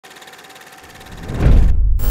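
Edited intro sound effects: a steady film-style hiss with faint crackle, then a deep bass rumble that swells in from about a second in and turns loud, with the hiss cutting off suddenly just before the end.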